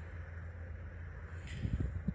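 Quiet outdoor background with a steady low wind rumble on the microphone. A single soft click comes about one and a half seconds in, followed by faint handling noise as the hand moves.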